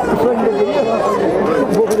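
Men's voices talking over one another in busy, unclear chatter.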